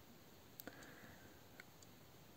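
Near silence: room tone, with a faint click about two-thirds of a second in and a smaller one about a second and a half in.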